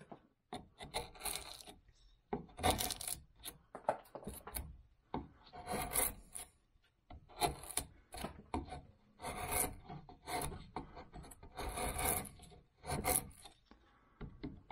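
Hand carving tool (gouge or chisel) cutting and scraping into cottonwood bark: a run of short slicing strokes, roughly one a second, with brief pauses between them.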